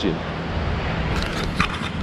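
Wind noise on the camera's microphone, a steady low rush, with a few quick handling clicks and scrapes in the second half as a finger touches the camera.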